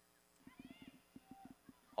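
Faint football-pitch ambience: a few distant high-pitched shouts and calls from players, with soft low knocks.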